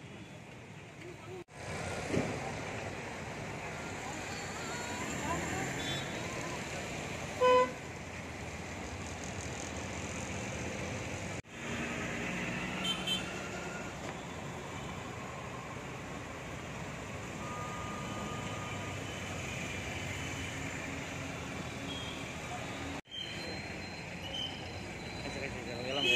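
Street ambience of traffic noise with people's voices in the background. A vehicle horn honks once, briefly and loudly, about seven and a half seconds in.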